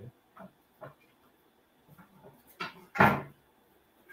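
A few faint, scattered knocks and clatters of wooden walking sticks being picked up and handed over.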